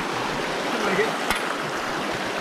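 Shallow rocky creek running steadily, with water rushing through a metal gold sluice box set in the current. A faint voice is heard about a second in, followed by a single sharp click.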